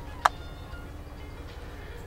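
A single sharp tap on the drone's cracked plastic camera dome about a quarter second in, over a steady low rumble.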